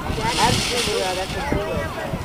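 High-pitched children's voices babbling and calling at a playground, with gusty wind buffeting the microphone in a low, uneven rumble.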